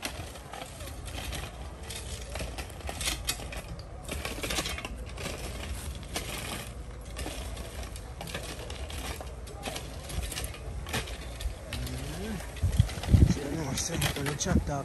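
Metal shovels scraping and scooping loose gravel and stones, a run of irregular gritty scrapes.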